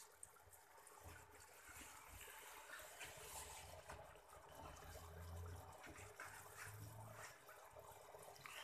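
Faint trickling water from a home aquarium, barely above room tone.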